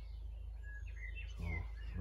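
A few short, faint bird chirps over a low steady background rumble.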